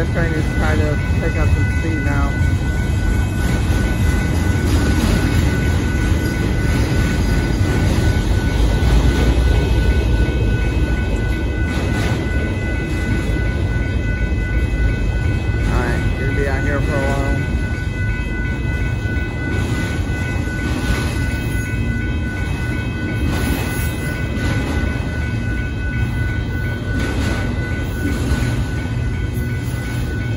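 Union Pacific mixed freight train of autorack cars rolling through a grade crossing: a steady low rumble of wheels on rail with occasional clanks. The crossing's warning bell rings steadily over it.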